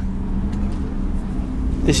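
Steady low hum of a road vehicle's engine running in the street, with no change in pitch; a voice comes in at the very end.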